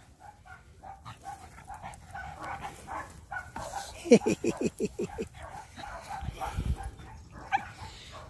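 Small dogs at play, with faint whimpers and snuffles. About four seconds in comes a quick run of about eight short yips, each falling in pitch, over roughly a second.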